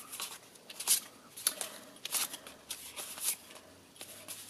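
Stack of Memories and More paper cards being flipped through by hand: a handful of short, irregular rustles and flicks of card against card.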